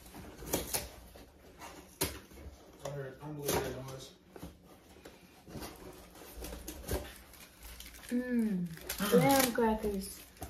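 A cardboard graham cracker box and its wrapper being opened and handled, with scattered crinkles and clicks. Near the end a dog whines a few times, each whine rising and falling in pitch.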